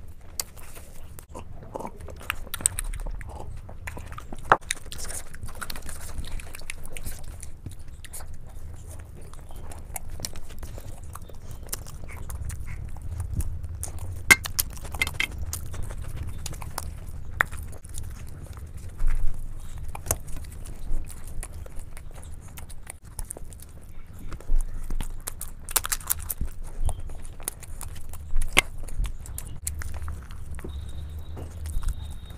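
Close-miked eating sounds: chewing of makki ki roti and sarson ka saag eaten by hand, with many short, sharp mouth clicks throughout. A steady low hum runs underneath.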